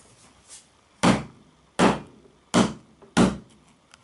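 A screwdriver struck down four times onto a Sony Ericsson Xperia Active smartphone lying on a wooden workbench: four sharp knocks, about three quarters of a second apart, that leave the phone undamaged.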